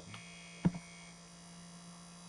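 Steady low electrical mains hum on the recording, with a single sharp click about two-thirds of a second in.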